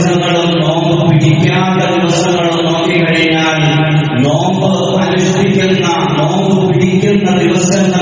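A male voice chanting in long, held notes without pause.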